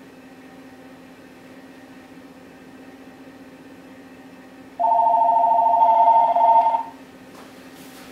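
Telephone ringing: one ring of about two seconds starting about five seconds in, a rapid warbling trill on two close pitches, over a faint steady low hum.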